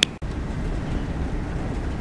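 A sharp click right at the start where the recording cuts, then the steady low rumble of a vehicle driving, heard from inside its cab.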